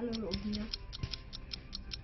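A fast, even ticking, about five ticks a second, runs over a low hum. A short hummed vocal sound comes at the start, and a single sharper click about a second in.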